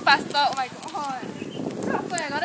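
A young person's voice making high-pitched, wordless calls or squeals that rise and fall.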